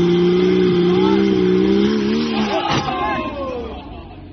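Porsche Boxster engine held at high revs in a steady drone that wavers and drops about two and a half seconds in. A sharp crunch follows as the car strikes the front of another car, with short squeals and shouts around it.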